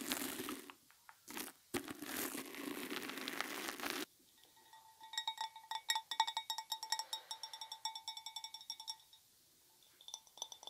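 A fuzzy plush pom-pom brushed and rubbed over a microphone grille, giving a scratchy rustle in a short burst and then a longer stretch. After a second of quiet, fingernails tap quickly on a glass bowl for about four seconds, each tap ringing with the bowl's clear pitch.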